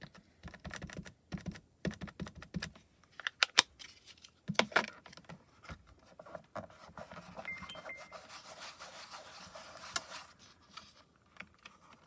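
Inking and stamping with a clear stamp in a hinged stamp-positioning tool: a run of light taps and clicks as the ink pad is dabbed on the stamp and the plastic parts are handled, then, about halfway through, a few seconds of soft rubbing as hands press the closed door down onto the cardstock.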